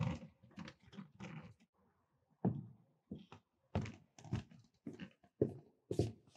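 Footsteps on a hard floor walking away: a run of dull thuds about two a second, starting about two and a half seconds in, after softer shuffling at the start.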